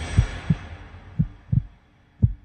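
Soundtrack heartbeat effect: low double thumps, each pair about a third of a second apart, repeating roughly once a second as the music falls away.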